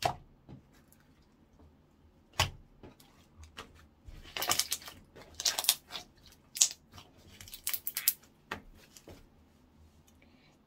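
Slime being stretched, folded and pressed by hand, making sharp pops. There are single pops at the start and about two and a half seconds in, then a run of rapid crackling clicks from about four to eight seconds.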